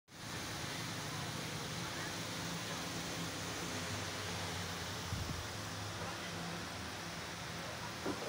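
Steady hiss of background room noise, with faint, indistinct voices underneath.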